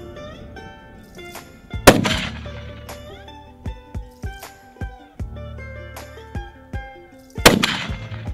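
Two shots from a scoped hunting rifle, about five and a half seconds apart, each followed by a short echo, over background music.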